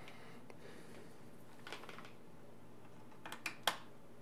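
Small clicks and taps of multimeter test probes and their leads being handled and set against a screw terminal block, a few faint ones early and three sharper clicks in quick succession near the end, over quiet room tone.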